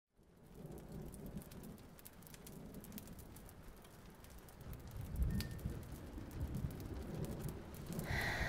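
Ambient rain with rolling thunder: a steady rain hiss with scattered drip clicks, and a low thunder rumble that swells about five seconds in.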